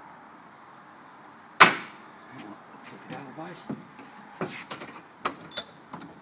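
A single sharp metal clank about a second and a half in, then several lighter knocks and clicks from handling the tank, tools and cast-iron bench vise.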